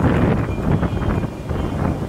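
Wind buffeting the camera microphone: a loud, rough rumble, strongest in the first second.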